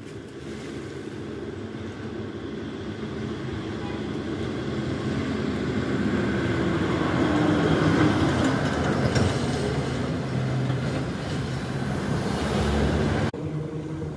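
A motor vehicle running: a steady rumble that grows louder over about eight seconds, holds, then drops off suddenly near the end.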